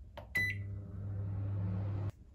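Microwave oven range started with a press of its start button: a click and a short beep, then the oven runs with a steady electrical hum.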